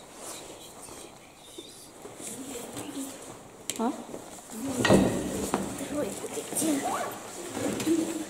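A sharp knock and clatter on a wooden tabletop about five seconds in, the loudest sound here, amid quiet voices.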